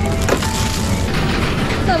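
Thin plastic wrap on a half cabbage crinkling as it is handled and set into a shopping cart, with a sharp crackle about a third of a second in. Light background music with held notes plays underneath.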